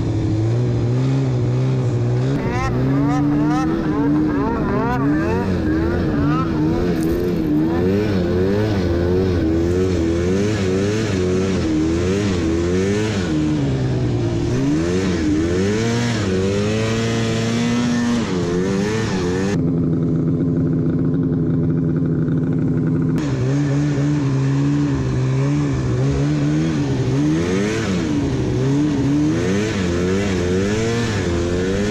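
Old Arctic Cat Phazer snowmobile's two-stroke engine revving up and down over and over as the throttle is worked, its pitch rising and falling every second or two with a few short steady stretches. For a few seconds about two-thirds of the way through the sound goes dull and muffled.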